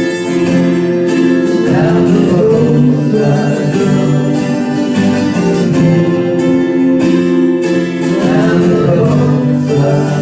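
Two acoustic guitars, one of them a 12-string, played together live: steady chordal strumming and picking, ringing continuously.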